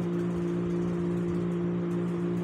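A steady low hum of two held tones that do not change in pitch or level, over a faint hiss.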